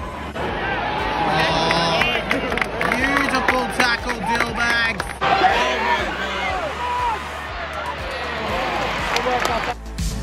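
Stadium crowd cheering and shouting, many voices at once, with music playing, as the home side levels the score with a goal. The sound cuts off briefly near the end.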